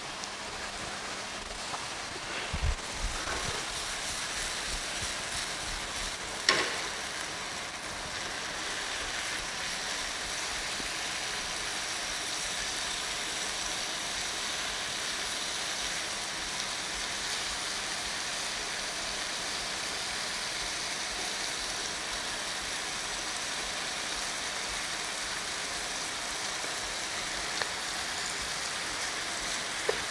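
Beef strips frying in hot oil in a nonstick pan, a steady sizzle that grows a little louder about eight seconds in. A few knocks about two to three and six and a half seconds in.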